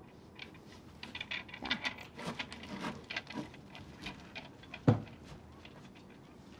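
Faint, scattered light clicks and taps, with one short low thump about five seconds in.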